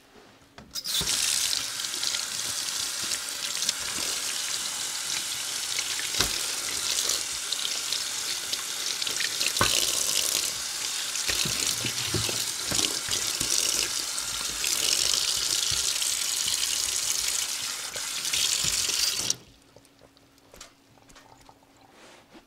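Kitchen tap running hard into a stainless steel sink onto a heap of smelt, with water splashing over the fish and a few sharp knocks. The water comes on about a second in and is shut off suddenly a few seconds before the end.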